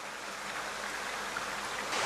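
Steady rushing of water from a heavily aerated koi pond, its surface churned by air bubbles, growing slowly louder.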